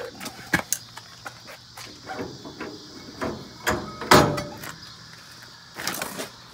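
Cast trailer hub and brake drum being worked off a 10,000 lb axle spindle by hand: scattered metallic clicks and scrapes, then a loud clank about four seconds in with a short metallic ring.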